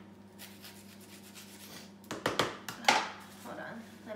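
A kitchen knife working the skin of an onion and then being put down on a plastic cutting board: faint scraping, then a cluster of sharp clicks and knocks between two and three seconds in. A low steady hum runs underneath.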